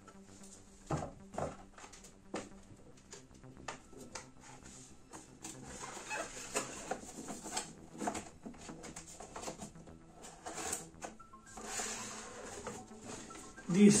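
Cardboard boxes being closed and handled on a bench: a lid folded shut, then a carton fitted and slid around it, with scattered taps, knocks and rustling scrapes. A faint steady hum runs underneath.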